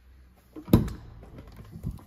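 A van's front cab door being opened: a sharp latch click about three quarters of a second in, then a duller thump near the end as the door swings open.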